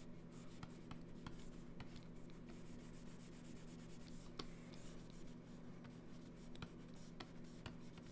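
Faint scratching and tapping of a stylus nib on a drawing tablet as short pen strokes are drawn, in irregular light ticks. A steady low hum runs underneath.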